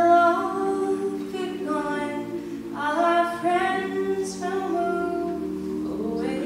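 A cappella group singing: a female lead voice sings a melody in phrases over sustained backing harmonies from the other voices.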